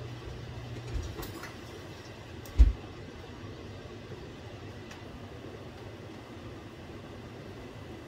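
Steady low kitchen hum, with a soft knock about a second in and a sharp thump about two and a half seconds in, the loudest sound, plus a few faint clicks: dishes and kitchen things being handled at the sink.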